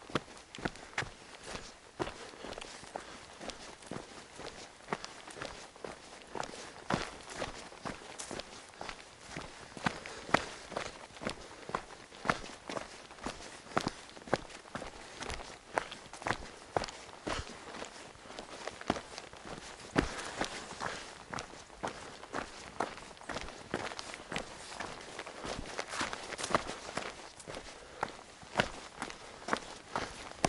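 A hiker's footsteps on a narrow dirt trail, a steady walking pace of about three steps every two seconds.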